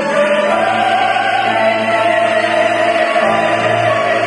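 Mixed ensemble of classical voices, sopranos, tenors and baritones, singing a Korean art song in unison and harmony, with piano and string accompaniment. Notes are long and held, and a low bass note enters about half a second in.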